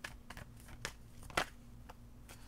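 Tarot cards being handled and pulled from the deck: a few sharp, irregular card snaps and clicks, the loudest about a second and a half in.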